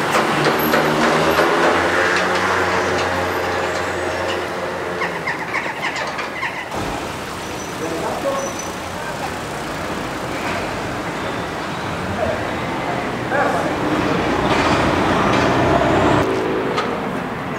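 Street traffic with a large vehicle's engine running as a steady low hum, and people's voices over it; the hum drops away suddenly about seven seconds in, leaving quieter street noise and chatter.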